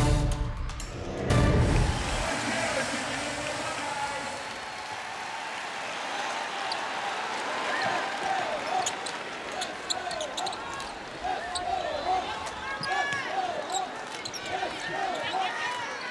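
A short music sting for about the first two seconds, then arena crowd noise with sneakers squeaking on a hardwood basketball court and a basketball being dribbled. The squeaks come thick and fast from about halfway through.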